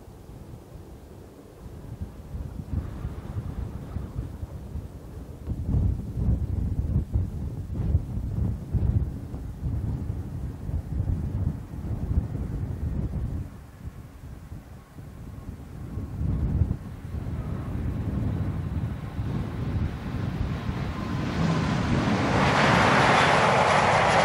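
Gusty wind buffeting the microphone over the distant running of an MC-21-300 airliner's Pratt & Whitney PW1400G geared turbofans as it flies past and comes in to land. Near the end the jet sound grows into a loud, steady roar as the airliner rolls out on the runway with spoilers raised, then cuts off suddenly.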